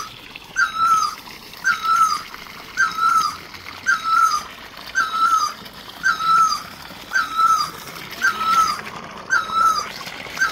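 An animal's call: one short, high, slightly falling note repeated steadily about once a second, about nine times.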